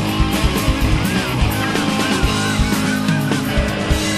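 Rock band recording: guitars over a steady drum beat, with a wavering lead line coming in about a second in.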